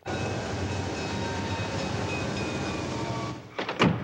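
Steady running noise of a passenger train that starts suddenly and cuts off after about three seconds, followed by a few sharp knocks.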